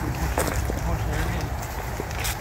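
Indistinct talking between two people over a steady low rumble, with scattered small crunches from footsteps and handcycle tyres on a leaf-strewn gravel trail.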